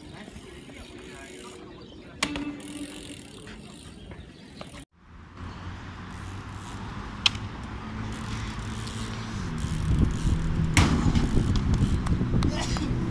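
Mountain bike being ridden on pavement, with sharp knocks of the bike's wheels landing and low street noise around it. The sound cuts off abruptly about five seconds in, then resumes louder with more landing knocks.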